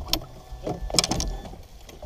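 A hooked small musky thrashing at the surface right beside the boat. There are a few sharp splashes, the loudest about a second in.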